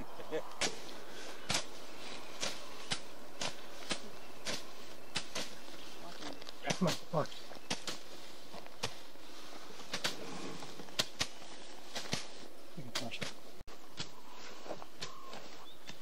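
Footsteps through tall dry grass and brush, a sharp crackle about every half second, over a steady background hiss. Faint low voices come in briefly near the middle.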